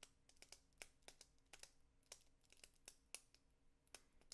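Faint typing on a computer keyboard: irregular key clicks, about four or five a second.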